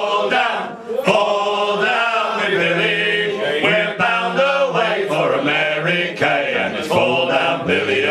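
Men singing a sea shanty unaccompanied, with voices carrying on continuously.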